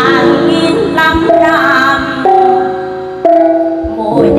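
A Mường gong ensemble (chiêng), each gong held by its cord and struck with a red cloth-padded mallet, ringing in long overlapping tones, with fresh strikes at the start, a little past two seconds and a little past three seconds in. A woman sings a melodic line over the gongs.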